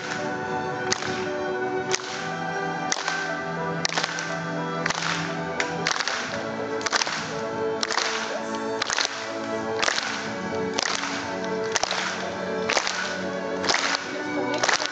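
Live orchestra holding sustained notes, punctuated by sharp percussion cracks about once a second, with no voice singing.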